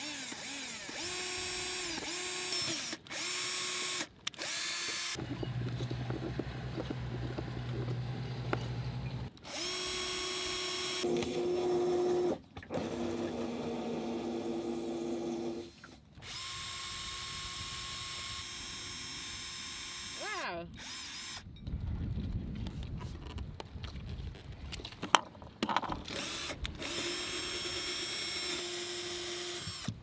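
Cordless drill running in a series of short bursts, starting and stopping with a brief rise or fall in pitch, as it drills holes through a sailboat deck.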